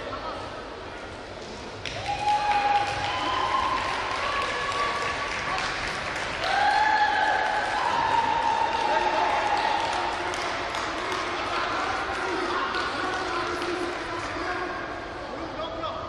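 Spectators and coaches shouting encouragement in long drawn-out calls over the murmur and clapping of a crowd in a hall, starting about two seconds in.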